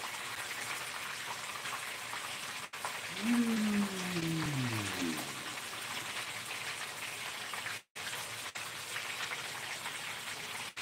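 Food frying in oil in a pan on the stove, a steady sizzle. About three seconds in, a woman's voice glides down in pitch once, for about two seconds.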